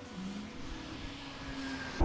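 Petrol running from a pump nozzle into a nearly full motorcycle fuel tank, heard as a faint rushing with a thin tone slowly rising in pitch as the tank is topped off.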